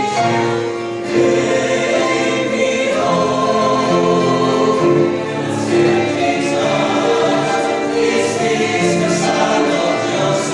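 Mixed church choir of men and women singing a hymn in parts, with long held notes that move from chord to chord.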